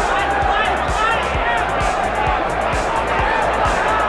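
Arena crowd noise with scattered shouts, over background music with a steady beat.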